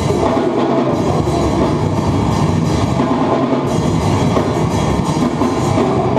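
Live hardcore band playing loud, with guitars and drum kit, heard in the room.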